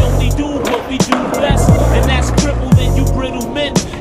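A hip hop beat with heavy sliding bass and drums, mixed with skateboard sounds: wheels rolling on concrete and the sharp clacks of the board popping and landing.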